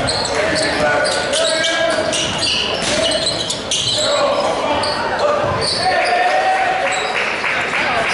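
Basketball bouncing and dribbling on a hardwood gym floor, with many short sharp knocks, under indistinct shouts and voices from players and spectators echoing in a large gym.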